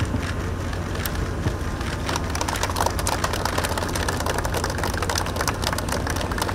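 Group of people applauding, the clapping starting about two seconds in and building to a dense patter, over a steady low hum.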